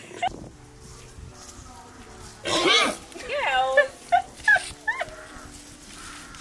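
People laughing in several short bursts, starting about two and a half seconds in after a quiet start.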